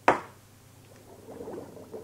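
One hard hammer bang on a wall, a radio-drama sound effect, followed about a second later by a faint gurgling of water in a pipe that grows toward the end.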